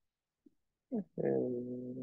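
A man's voice: a short word about a second in, then one long, level, drawn-out hesitation sound.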